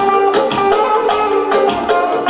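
Electric guitar playing a quick melodic line with notes changing several times a second, over a Korg Pa800 arranger keyboard accompaniment with a steady beat.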